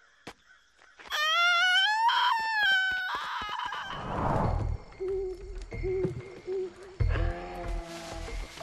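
A high, rising cartoon scream lasting about two seconds, followed by a falling whoosh and a few short repeated low notes.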